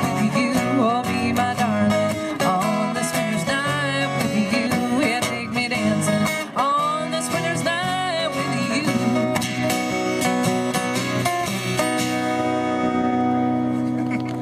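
Closing bars of a live folk song: two acoustic guitars strumming under a wordless vocal line, then a final chord held and left to ring near the end.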